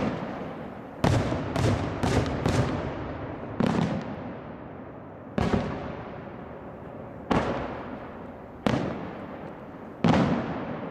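Aerial firework shells bursting in the night sky: about eight sharp booms, four packed into the first few seconds and then one every second and a half to two seconds, each trailing off in a long echo.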